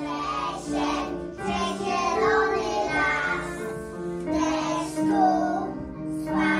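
Young children singing a song together over a keyboard accompaniment with held notes.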